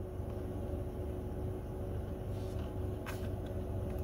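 Steady low rumble and hum inside a stationary car, with a brief faint rustle about three seconds in.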